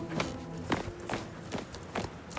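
Hard-soled footsteps on stone paving, evenly paced at about two steps a second.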